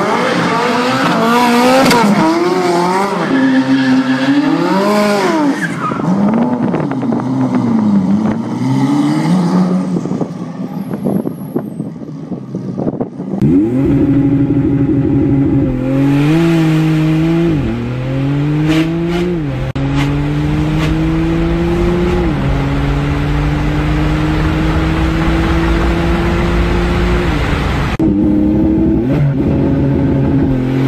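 Ferrari F40's twin-turbo V8 revving up and down with tyre squeal as the car spins donuts. About 13 seconds in it gives way to a Porsche at a full-throttle launch-control start, heard from the cabin: the engine pitch climbs and drops sharply at each of about five upshifts.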